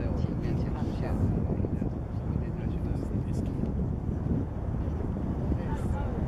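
Outdoor city ambience: a steady low rumble with wind on the microphone and faint, indistinct voices.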